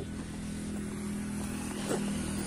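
A motor vehicle engine running steadily, an even hum with no change in pitch.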